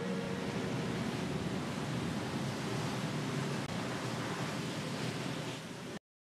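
Steady rushing of wind and rough sea waves, with a held music note fading out in the first second; it cuts off abruptly at the end.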